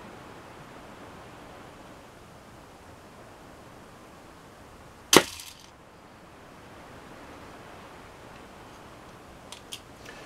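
A miniature horn-and-sinew composite crossbow of about 35-pound draw is shot once about five seconds in: a single sharp snap with a short ring after it. A couple of faint clicks follow near the end.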